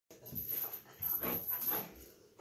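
German shepherd puppy vocalizing in two bouts of about half a second and a second.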